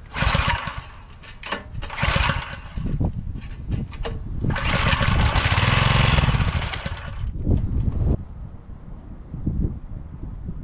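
Small single-cylinder gasoline engine on a pressure washer being pull-started: a few quick recoil pulls, then it fires and runs for about two seconds before stuttering and dying about eight seconds in.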